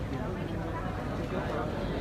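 Indistinct voices talking in a large indoor sports hall, with no shuttle strikes heard.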